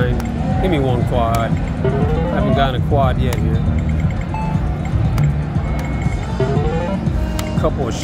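Casino gaming-machine sounds: electronic tones gliding up and down again and again, with short clicks, over a steady bed of background music and crowd noise.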